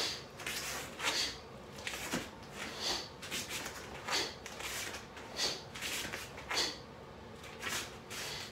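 A run of short swishes, one every half-second to second, as a barefoot karateka steps and punches in a cotton gi: the uniform's fabric snapping with each technique, along with sharp breaths.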